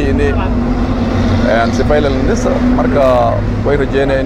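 A man speaking Somali close to the microphone, over the steady low hum and rumble of a motor vehicle engine running nearby.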